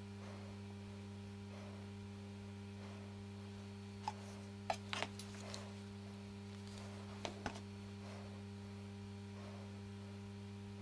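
Steady low electrical hum with a few small, sharp clicks from handling a crochet hook and a thread-wrapped wire stem: a cluster around four to five seconds in and two more a little after seven seconds.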